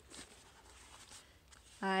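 Faint scraping and rubbing as a cardboard tray of glass nail polish bottles is moved and set down on carpet; a woman starts speaking near the end.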